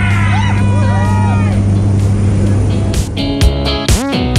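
Steady drone of a jump plane's engine heard inside the cabin, with people cheering and whooping over it in the first second and a half. The drone gives way about two and a half seconds in to music with a strummed guitar and a strong beat.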